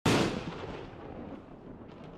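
A single loud boom, a sound effect laid over the opening: it hits suddenly at the very start, then a long rumbling tail fades slowly away.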